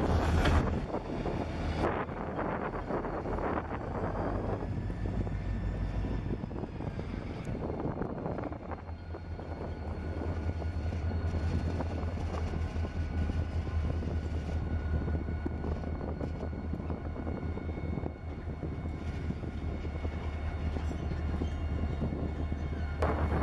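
CSX diesel-electric road-switcher locomotives running at low throttle in a slow yard move, a steady low engine rumble. There is a burst of clicking and rattling in the first two seconds.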